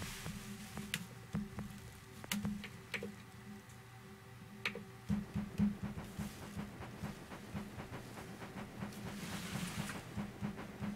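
Faint music from an Akai MPC X: a sampled loop playing back, with a steady low tone under a regular run of short ticks that grows busier about halfway through.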